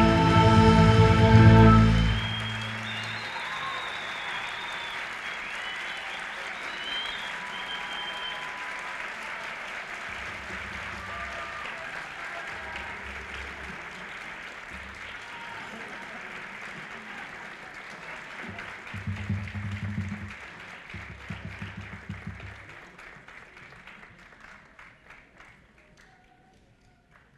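A live orchestra's final held chord cuts off about two seconds in, and a theatre audience breaks into applause and cheering, which slowly dies away near the end.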